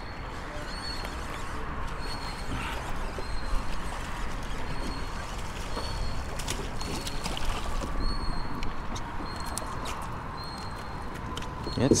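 Steady rush of a strong current moving around the kayak, with a faint high chirp repeating about once a second and a few sharp clicks in the second half.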